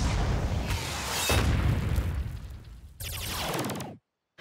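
Cartoon explosion sound effect: a loud blast and rumble that surges again about a second in and dies away by about three seconds. It is followed by a brief falling sweep that cuts off suddenly.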